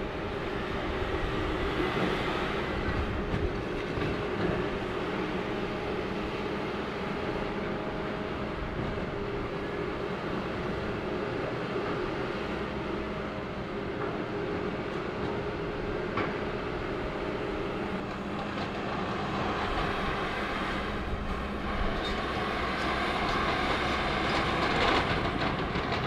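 John Deere 160G excavator running steadily with its hydraulics working, with scattered knocks and cracks as its bucket and thumb tear apart a wooden building's roof and lift a sheet of metal roofing; the noise swells a little near the end.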